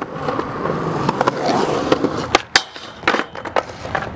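Skateboard wheels rolling over rough concrete, then sharp clacks of the board striking the ground about two and a half seconds in and again around three seconds, after which the rolling dies down.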